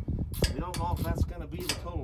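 Indistinct talking, with a few sharp clicks as hands work at a seed tender's auger above spilled soybeans.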